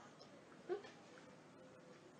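Near silence, broken about two-thirds of a second in by one brief, faint, rising squeak from a young child.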